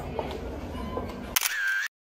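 Smartphone camera shutter click about one and a half seconds in, over a low room background, as a mirror selfie is taken; a short tone follows and then the sound cuts out suddenly.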